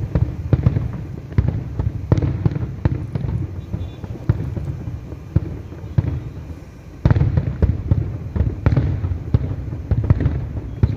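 Aerial fireworks display: a dense run of booming bursts and crackles in quick succession. It thins out a little around the middle, then a heavy barrage of bangs starts again about seven seconds in.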